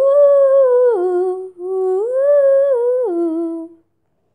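A girl's voice singing an unaccompanied wordless melody in two held phrases. Each phrase rises in pitch, holds, then steps back down, with a short break between them.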